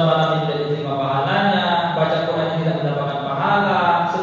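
A man chanting a religious recitation in a slow, melodic voice with long held notes.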